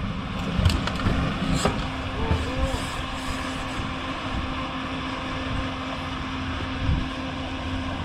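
A fire engine's motor runs steadily with a constant low hum. Two sharp knocks in the first two seconds come from forcible-entry tools at the door.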